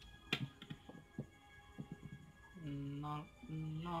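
Small sharp clicks and taps of a screwdriver and the metal odometer number-wheel assembly being handled, the loudest about a third of a second in. They are followed near the end by a man's drawn-out voice saying "nol" (zero) over faint background music.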